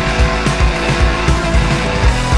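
Loud rock band recording in an instrumental passage: a fast, driving drum beat under a dense wall of band sound, with no vocals.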